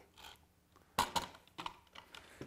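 A few light clicks and knocks from a Bessey Revo parallel-jaw bar clamp being handled and set down on the workbench, the sharpest about halfway through, followed by smaller ones.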